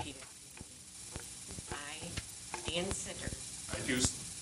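Faint, low voices and scattered small clicks over a steady hiss, with a voice beginning to speak near the end.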